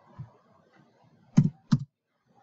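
A few keystrokes on a computer keyboard: a soft tap just after the start, then two louder clacks close together about a second and a half in, made while correcting a misspelled word.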